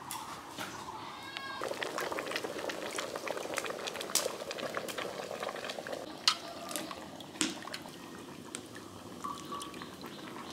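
Water sloshing and splashing in a metal bowl as peeled zucchini pieces are handled in it, strongest for a few seconds from just under two seconds in, with sharp clicks and taps of the pieces and the boti blade scattered through.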